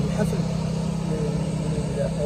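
A man speaking into a handheld microphone, with a steady low rumble underneath.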